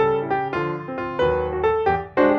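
Background piano music: a slow melody with a new note or chord struck about every half second.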